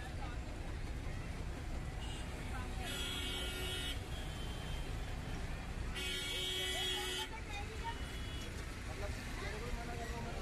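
Street traffic with engines running and a vehicle horn honking twice, each blast about a second long, around three seconds in and again around six seconds in. Shorter, fainter horn beeps sound in between.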